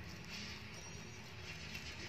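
Faint rustling and scratching of a cotton blanket as a hamster tugs and nibbles at its edge, over a low steady hum.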